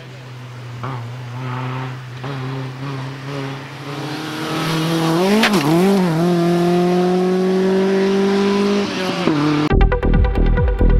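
BMW E30 rally car's engine under hard acceleration on a wet stage. The revs climb, swing down and up twice around halfway through gear changes, hold high and steady, then drop off near the end. Electronic music comes in just before the end.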